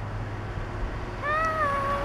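A small cat meows once, a single drawn-out call starting just past halfway through.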